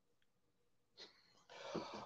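Near silence for about a second, then a soft intake of breath near the end, just before speech begins.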